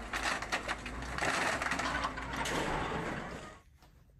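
Scrapyard demolition shear crushing a car body: metal crunching and cracking with many sharp snaps, fading out near the end.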